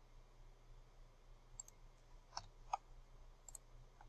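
A few faint computer mouse clicks, about four scattered over a couple of seconds, against near silence.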